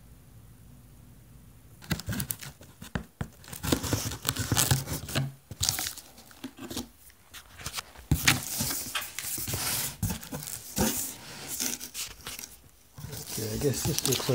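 Packing tape ripped off a cardboard shipping box and the cardboard flaps pulled open, in a run of irregular tearing and crinkling rustles starting about two seconds in.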